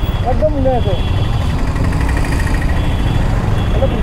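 Wind rushing over a helmet-mounted microphone and road noise from a motorcycle riding in traffic, a dense steady rumble, with a man's voice briefly under it early on and again near the end.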